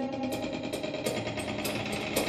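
Drum kit played fast and freely: a rapid, uneven stream of drum and cymbal strokes, many a second, with cymbal wash ringing underneath.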